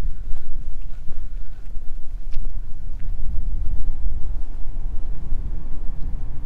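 A motor running inside the underground bunker: a low, steady rumble, with wind gusting on the microphone.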